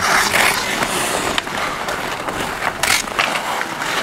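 Ice hockey skates scraping and hissing across outdoor ice, a steady grinding rush of blades. A few sharp clicks of hockey sticks and puck cut through it.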